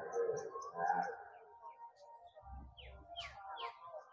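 Outdoor background of distant voices and music-like tones, with three quick falling bird chirps near the end and a brief low rumble just before them.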